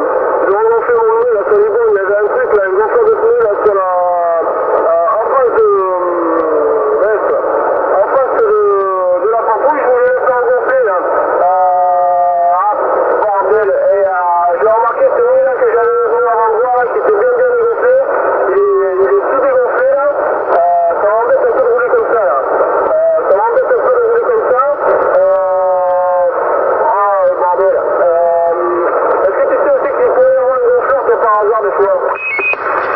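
A man's voice received over a CB radio in USB single sideband, coming through the set's speaker thin and narrow-band. He talks almost without a break, and the words come out garbled, as on a sideband signal that is not tuned in exactly.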